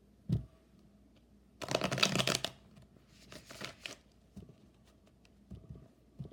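A deck of tarot cards being shuffled by hand. A single thump comes just after the start, then a fast, dense flutter of cards for about a second, followed by shorter rattles of cards and a few light ticks.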